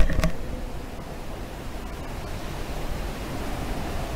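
Steady low hiss and rumble of background noise picked up by a handheld microphone, with a short knock at the very start.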